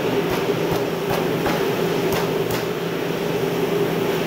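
Meat cleaver chopping cooked duck on a thick wooden chopping block: about six sharp knocks, unevenly spaced, over a steady machine hum.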